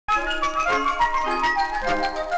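Orchestral introduction of a 1950s 78 rpm pop record: instrumental music with a quick stepping melody, starting right at the beginning.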